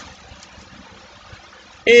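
A pause in a man's speech, filled only by a faint steady hiss of room noise; his voice comes back near the end.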